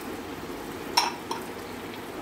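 Green chilli and coriander paste frying in butter and oil in a pan, stirred with a wooden spatula, with a sharp clink about a second in and a smaller one just after.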